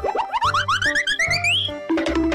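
Children's background music with a steady beat, overlaid by a cartoon sound effect: a quick run of short rising sweeps, each starting higher than the last, climbing in pitch for about a second and a half.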